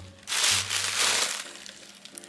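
White tissue paper crinkling as it is handled and crumpled, for about a second, then fading.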